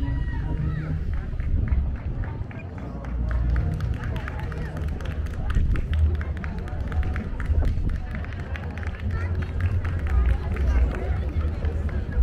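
Wind rumbling and buffeting on the microphone, over people talking in the background, with a quick run of faint ticks through the middle.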